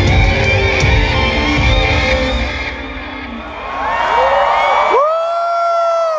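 Live concert music through a large festival PA, heavy bass and drums, heard from within the crowd. Halfway through, the bass drops out and the crowd's cheering swells. About five seconds in, one long, high, held voice rises over the crowd and holds a single note.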